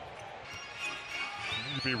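Basketball arena background: low crowd noise with music under it, and a high wavering tone coming in near the end.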